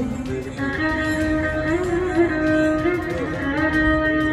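Instrumental interlude between sung lines: an accompanying instrument plays a melody in steady, held notes.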